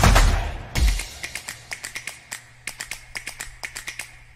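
Promo-video soundtrack: the music's beat fades out within the first second, leaving a run of quick, dry clicks over a faint low hum.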